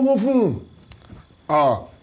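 Steady high chirring of crickets in the background, under a man's speech that trails off early and resumes briefly near the end, with a single faint click in the pause.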